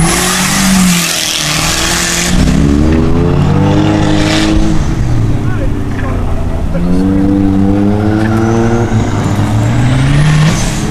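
Dodge Neon autocross car driving hard through a cone course. It passes close with a loud rush of tire and engine noise in the first couple of seconds. Then the engine note climbs twice as it accelerates out of turns, falling back in between.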